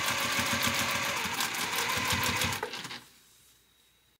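Electric sewing machine stitching at a short stitch length in a fast, even run, sewing Petersham ribbon binding onto the edge of a corset. It stops just under three seconds in, leaving only faint background hum.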